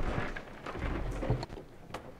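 Audience applause thinning out, with low thumps and rumble from handling close to the lectern microphone about a second in.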